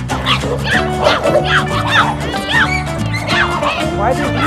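Several dogs barking and yelping rapidly and repeatedly in a scuffle, about two to three calls a second, over steady background music.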